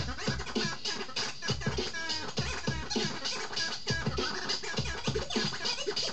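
Turntable scratching: a vinyl record pushed back and forth under the needle in quick strokes, making short sliding up-and-down pitches. It is cut over a drum beat with a heavy kick.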